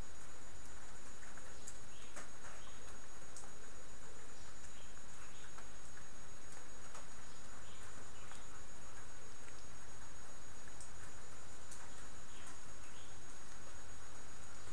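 Steady background noise: a low hum and even hiss at a constant level, with faint, scattered short ticks and chirps in the high range.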